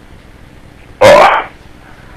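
A man's single short, loud shouted "Oh!" about a second in, over a low steady hiss.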